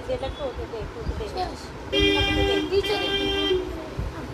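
A vehicle horn honking about two seconds in: a steady, loud blast with two notes sounding together, briefly broken and then held again for about a second and a half in all.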